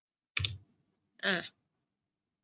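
A single short click, then one brief spoken syllable; the rest is silence.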